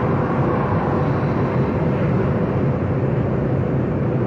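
Steady road and engine noise inside the cabin of a moving car: an even low rumble that holds level throughout.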